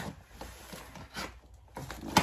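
Cardboard box being opened by hand: a few soft rustles and scrapes of its flaps.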